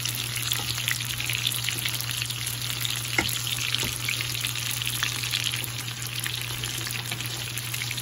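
Chicken meatballs frying in oil in a cast-iron skillet: a steady sizzle with many small crackles, and one sharper tick about three seconds in. A steady low hum runs underneath.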